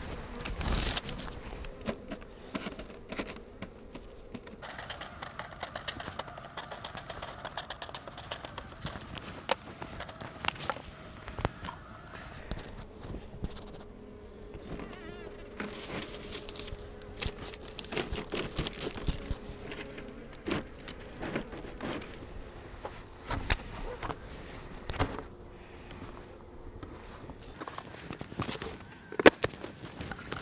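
Honey bees buzzing around an open hive, with a steady hum holding for several seconds at a time in the second half. Scattered knocks and scrapes come from wooden hive boxes and covers being handled.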